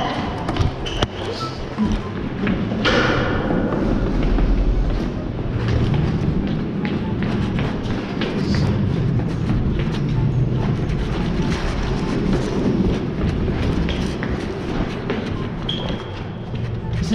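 Footsteps thudding on stairwell steps as someone climbs, with knocks and handling noise close to the microphone.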